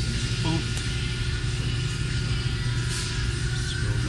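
A steady low machine hum with a layer of hiss, unchanging in pitch and level.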